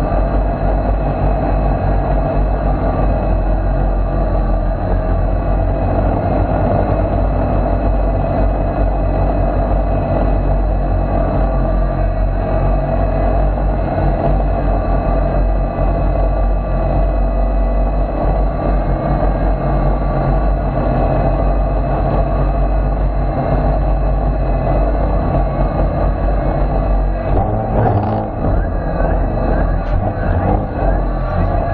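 DJI Phantom quadcopter's motors and propellers whining steadily in flight, heard through a camera mounted on the drone, with a dense low rush of prop wash and wind on the microphone. Near the end it settles onto grass with the motors still running, ending an unpiloted failsafe flight.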